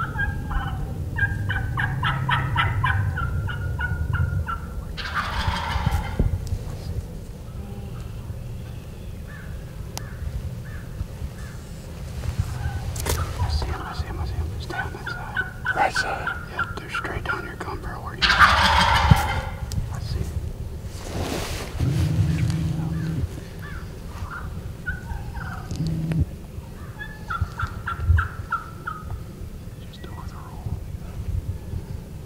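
Wild turkey gobblers gobbling again and again at close range, each gobble a quick rattling call, the loudest about 5 and 18 seconds in.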